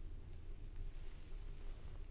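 Quiet room tone in a pause between sentences of speech: a steady low hum with faint scattered ticks.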